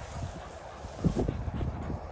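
A spaniel panting in short breaths, the breaths coming closer together about a second in, over a low rumble.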